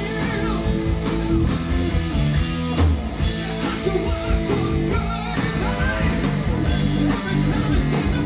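A hard rock band playing live: a male lead singer over electric guitars, bass and drums.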